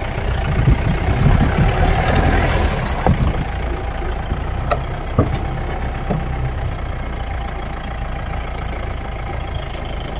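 Off-road vehicle's engine running low as it drives slowly over a rough dirt track, with a few sharp knocks and rattles from the body over bumps in the first six seconds.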